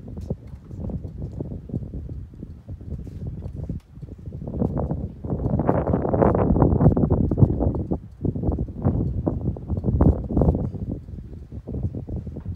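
Low rumbling and irregular knocks on a phone microphone, typical of wind buffeting and handling, growing loudest in the middle.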